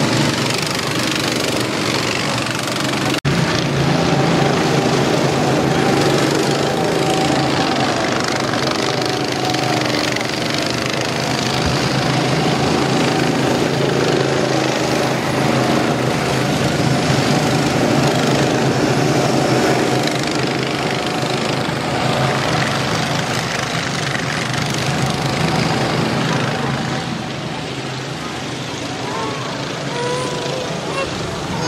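Several go-karts' small gasoline engines running together, a steady engine drone that rises and falls a little as the karts lap the track. There is a sudden break about three seconds in.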